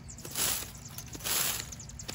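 Leaf rake scraping and dragging across dirt, dead grass and debris: two strokes about a second apart.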